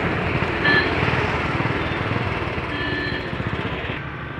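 A motor vehicle engine running close by with a rapid, even pulse, growing a little quieter toward the end.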